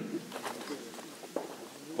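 Quiet outdoor pause with a bird calling faintly in the background and a single light click a little past halfway.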